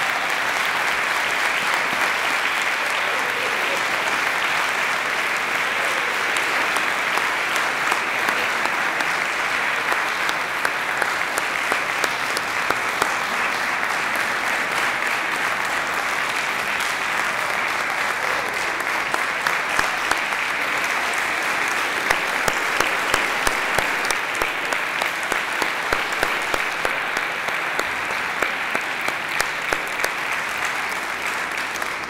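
A large audience applauding without a break: a standing ovation at the end of a speech. In the second half, single sharp claps stand out above the dense clapping.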